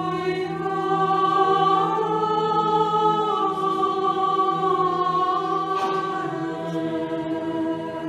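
A choir singing slowly, with long held notes over a steady low note underneath.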